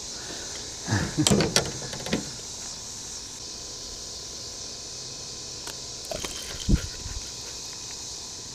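Steady high-pitched chorus of insects in the background. A cluster of knocks and rattles comes about one to two seconds in, from gear and the catch being handled on the boat, and a single low thump comes near the end.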